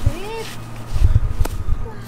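A dog gives one short whine, its pitch rising and then falling, followed by a run of low thumps and a single sharp click.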